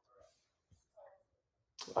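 A quiet pause in speech: faint breaths and small mouth sounds, one soft click about three-quarters of a second in, and the voice starting again just before the end.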